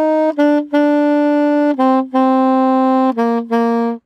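Solo saxophone playing a syncopation exercise: short-long pairs of notes stepping down the scale, each held note after a short one. The tied offbeat notes are accented with a harder tongued attack.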